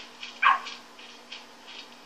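A dog gives one short yelp that falls in pitch, over light, regular footfalls of someone jogging, heard through a TV's speakers.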